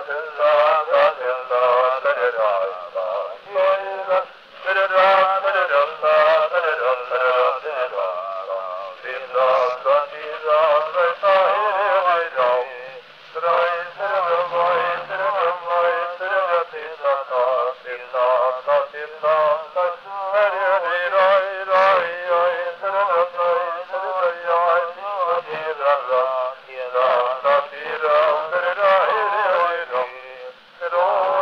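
A man singing a Hasidic melody, heard through an early-1900s Edison wax-cylinder recording: thin and narrow in range, with no bass, and with surface hiss and frequent crackles.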